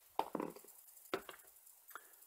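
Six-sided dice clicking as they are gathered from a fabric dice tray and rolled, in two short clusters of quiet clicks: one just after the start and one about a second in.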